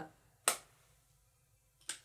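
A single sharp click about half a second in, then quiet room tone, with a second, shorter click-like sound near the end.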